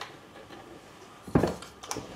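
A wall light fitting being handled: a knock about one and a half seconds in and a sharp click near the end, with a faint hard clink.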